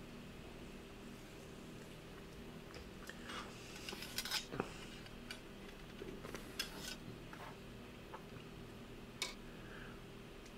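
Faint clinks, taps and rustles of a metal cleaning rod and cloth patches being handled on a workbench, over a steady low hum. A cluster of sharper clicks comes about four seconds in, and a single click near the end.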